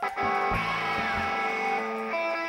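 Electric guitar starting to play: a strummed chord comes in suddenly and rings on steadily, with a couple of low thuds underneath.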